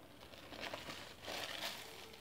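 Paper wrapper around a burger crinkling as it is handled, starting about half a second in and getting louder toward the end.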